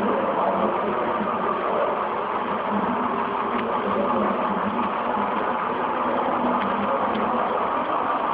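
HO-scale model freight train rolling past: a steady, even noise of many small wheels running on the rails.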